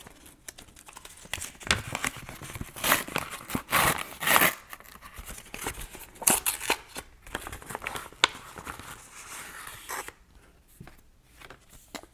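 A paper mailing envelope being torn open by hand: a run of uneven ripping and crinkling, loudest about three to four and a half seconds in. It dies down to quiet paper handling about ten seconds in.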